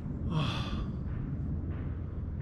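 A person's audible exhale, a breathy sigh about half a second in, followed by fainter breaths, over a steady low rumble.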